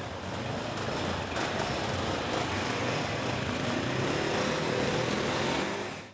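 Several motorcycles running and pulling away along a street: a steady engine and road noise, with an engine note rising about four seconds in.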